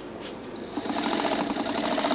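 Electric sewing machine starting up about three-quarters of a second in and then running steadily at speed. It is running again after it had gone wrong and been put right.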